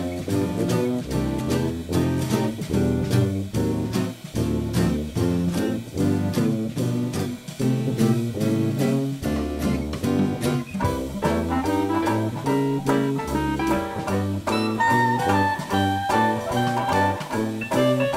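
Instrumental swing-style jazz: a steady beat, a moving bass line and guitar chords, with a higher melody line coming in about two-thirds of the way through.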